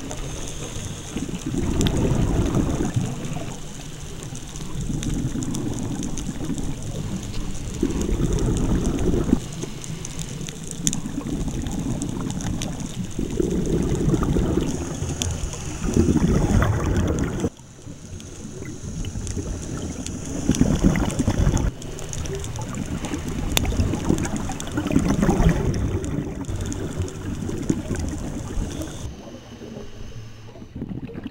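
Scuba diver breathing through a regulator underwater, with a gurgling rush of exhaust bubbles every few seconds.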